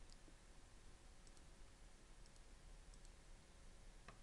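Near silence: room tone with a few faint, scattered computer-mouse clicks.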